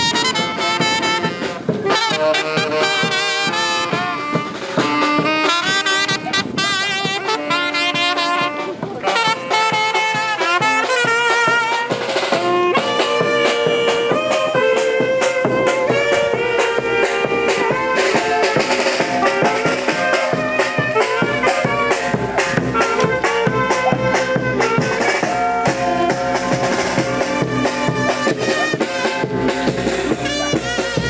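Brass band music: brass and wind instruments playing a melody over drums.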